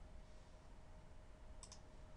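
Near silence, then two quick computer mouse clicks close together about one and a half seconds in.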